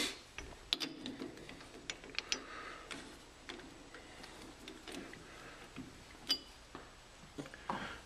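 Light, scattered metallic clicks and taps from handling a homemade tailstock alignment tool and its dial indicator clamped in a lathe chuck, with one sharper click at the start.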